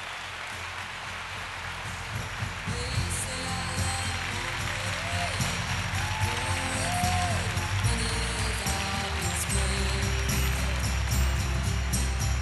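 Audience applause, with music coming in with a deep bass line about three seconds in and getting louder.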